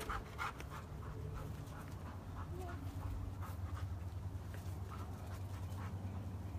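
A dog panting, quick breaths at about three a second, over a steady low background hum.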